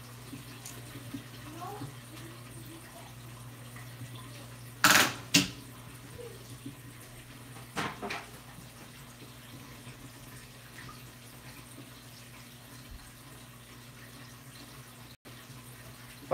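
Saltwater aquarium water trickling over a steady low electrical hum of tank equipment, with the powerheads switched off. Two sharp knocks come about five seconds in and two fainter ones around eight seconds.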